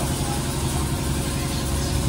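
A steady low mechanical hum from a running machine.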